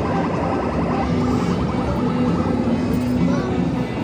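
Busy arcade din: game-machine music and jingles over background crowd chatter.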